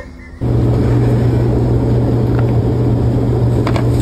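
Steady low mechanical drone and rumble inside a tour bus, starting abruptly about half a second in and holding even, with a few faint clicks near the end.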